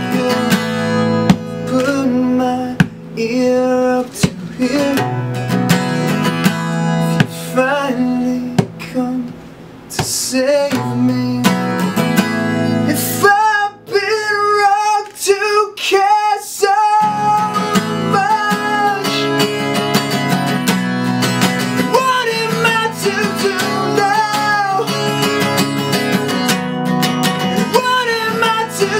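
A man singing to his own strummed acoustic guitar. About halfway through, the guitar stops for a few seconds, leaving the voice alone, then the strumming comes back in.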